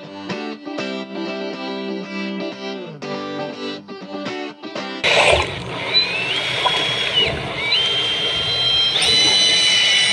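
Guitar music for about the first half, then a cut to a power drill spinning a paddle mixer in a bucket of water-thinned paint. The drill's whine rises, holds and drops twice, then runs steady at a higher speed near the end.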